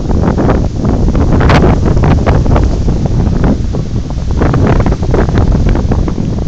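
Strong storm-front wind blowing across the microphone in loud, uneven gusts.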